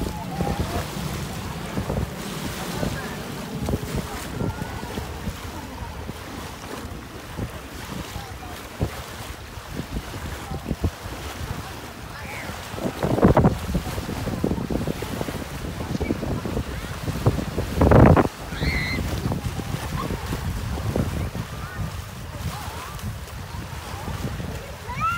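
Small choppy waves washing onto a gravelly shore, with wind buffeting the microphone. Two louder wave surges come a little past halfway and about three-quarters of the way through.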